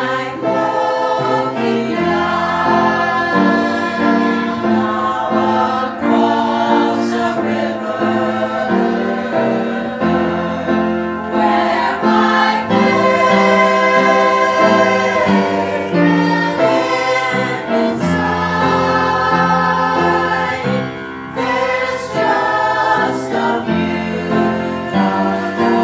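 Church choir of women's and children's voices singing a hymn anthem in sustained phrases, with piano accompaniment underneath.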